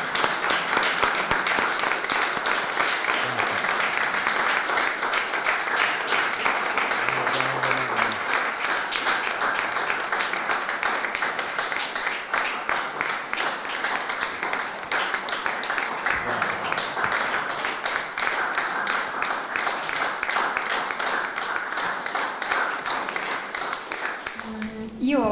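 Audience applauding: a long, steady round of many hands clapping.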